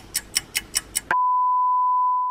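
Six short, high clicks about five a second, then, a little over a second in, a steady one-pitch test-tone beep of the kind played with television colour bars.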